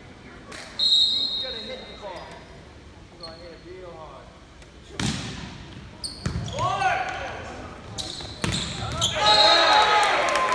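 Volleyball rally in a gymnasium: a referee's whistle blows briefly about a second in, then several hard ball contacts follow from about halfway through. Players and spectators shout through the second half, and another short whistle near the end stops the rally.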